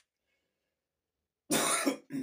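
A man coughs into his fist: one loud cough about one and a half seconds in, after a stretch of silence.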